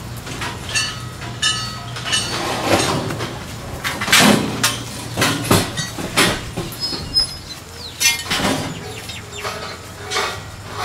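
Steel scaffolding frames and poles clanking and scraping against each other as they are handled, with a string of sharp metal knocks, some of which ring on.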